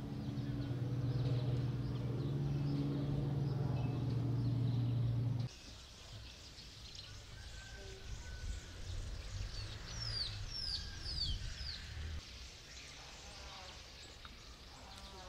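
A steady low mechanical hum that cuts off suddenly about five seconds in, leaving a quiet outdoor hush in which a bird gives a few short, falling chirps.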